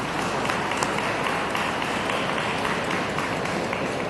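Audience applauding: a steady, dense patter of many hands clapping.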